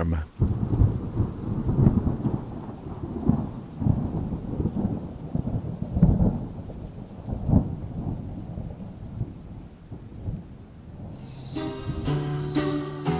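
Thunder rumbling in a rainstorm, rising and falling in irregular swells and dying away near the end as music begins.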